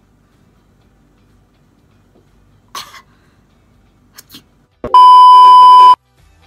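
A loud, steady electronic bleep lasting about a second near the end, the flat single-pitch beep that editors lay over a video's sound. Before it there are only a few brief soft noises.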